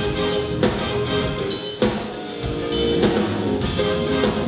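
Live rock band playing, with drum kit, guitar and keyboards under a horn section of saxophone, trombone and trumpet holding notes together.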